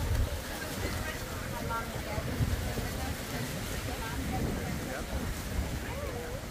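Wind buffeting the microphone, a steady low rumble, with faint snatches of people talking in the distance.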